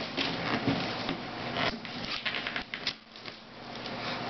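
Wrapping paper rustling and crinkling, with hands scraping and tapping on a cardboard gift box in an irregular run of small crackles and clicks that eases off near the end.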